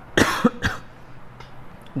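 A man coughing twice in quick succession, the first cough the louder.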